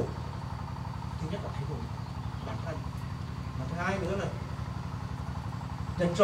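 A steady low mechanical hum, like an engine running, with two brief faint voice sounds near the middle.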